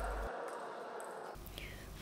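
Faint sports-hall ambience: a low, even hiss with no distinct ball strikes, sinking slightly in level.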